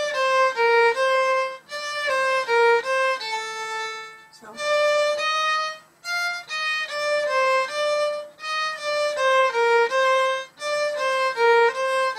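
Solo violin playing the same short phrase of a minuet about four times over, with brief breaks between. Each time the separate bowed notes step down and back up within a narrow range.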